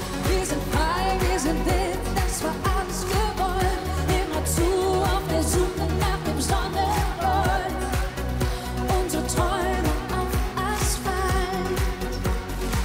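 A woman singing a pop song live into a handheld microphone over a pop backing track with a steady beat and heavy bass.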